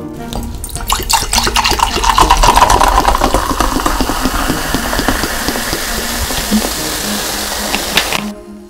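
Coca-Cola poured from a plastic bottle into a glass: a steady splashing pour with a dense crackle of carbonation fizzing as the foam rises, stopping suddenly at the end.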